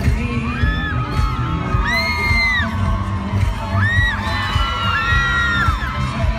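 Live pop band playing loud over an arena sound system, with a heavy steady bass-and-drum beat. Fans close by let out several shrill, high-pitched screams over it, the loudest about two seconds in.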